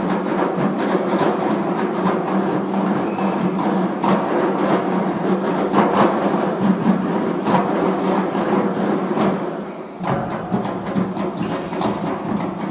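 A drum ensemble of large double-headed shoulder drums playing together in a fast, dense rhythm. The playing thins briefly near the end, then picks up again.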